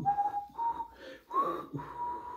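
A person whistling a few short notes of a tune, each note a thin tone, one of them sliding upward, with breathy hiss between them.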